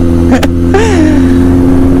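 Motorcycle engine running at a steady cruising speed, a constant drone, with low wind rumble on the microphone at highway speed.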